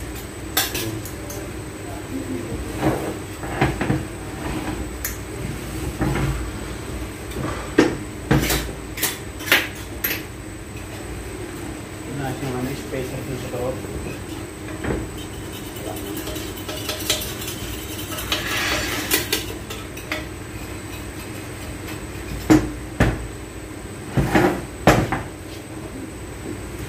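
Metal parts of a transfer case clinking and knocking as it is taken apart by hand: gears, shafts and the cast housing striking each other and the workbench. Scattered sharp knocks, with louder clusters about a third of the way in and again near the end.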